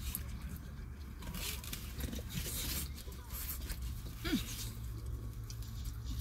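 A plastic fork scraping and rustling food in a takeout container, in soft scratchy bursts over a steady low hum inside a vehicle. A short falling pitched sound comes about four seconds in.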